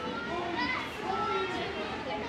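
Young children's voices chattering and calling out in high, rising and falling tones, over a background of other voices.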